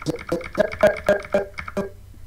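Stuttering playback from a video editor's timeline being scrubbed slowly: short clipped fragments of the clip's soundtrack, about seven a second, each starting with a click.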